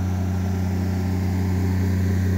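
Honda EB12D diesel generator running steadily: an unbroken low engine hum with no change in speed.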